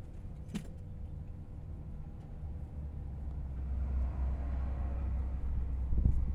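Low background rumble that swells louder through the second half, with a sharp click about half a second in.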